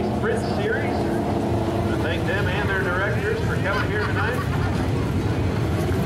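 Winged dirt sprint car's V8 engine running at low speed as the car rolls along, with people's voices talking over it.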